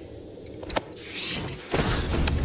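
A scuffle: a sharp click, then a rush of movement and a heavy thud near the end as a body is shoved against a wall.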